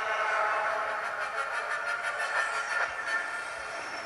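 A film soundtrack of held, chord-like tones and effects playing through the Nook Color tablet's small built-in mono speaker, thin and without bass.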